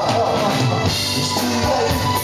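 Live band playing, with drum kit and electric guitar, in a stretch with no words sung.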